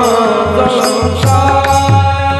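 Men singing a Marathi abhang, a devotional bhajan, with a lead voice on a microphone. The singing settles into a long held note about a second in, over a steady rhythmic percussion beat.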